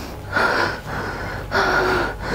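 A young woman gasping and breathing hard in her sleep, two breathy gasps a little over a second apart, the distressed breathing of someone in a nightmare.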